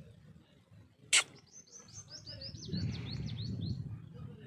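A single sharp click about a second in, then a small bird singing a quick run of high, repeated chirps, about four to five a second, over a low rumble.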